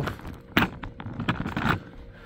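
Handling noise: a quick series of light clicks and knocks, from about half a second in until shortly before the end.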